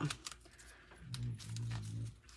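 Paper release backing being picked and peeled off adhesive craft foam: faint crinkling and small ticks. A low steady hum comes in about halfway and lasts about a second.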